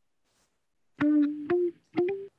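About a second of silence, then three short sampled guitar notes played back from a beat sequence, each with a sharp pluck that rings briefly, the later two a little higher in pitch.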